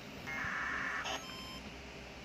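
Amateur radio transceiver's speaker giving a short buzzy electronic burst lasting under a second, starting about a quarter second in, followed by a brief higher blip and a few faint thin tones.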